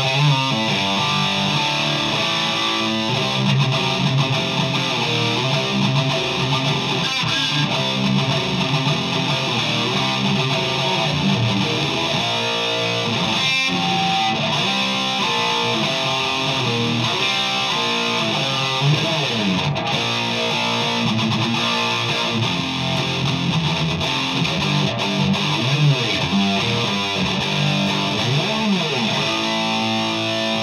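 Electric guitar played through a Panama Shaman II amp head into a cabinet loaded with the EVH speaker, one continuous passage of playing.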